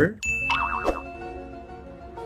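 A sound effect added in editing: a bright ding a quarter second in with a short warbling tone, followed by a soft held musical chord.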